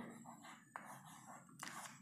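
Faint scratching of chalk on a blackboard: a few short strokes as letters are written, otherwise near silence.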